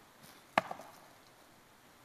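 A single sharp knock about half a second in, followed by a couple of fainter ticks, in an otherwise quiet room.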